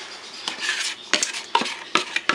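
Wooden spoon scraping melted butter out of a plastic bowl into a mixing bowl: a scraping hiss in the first second, then a few sharp knocks.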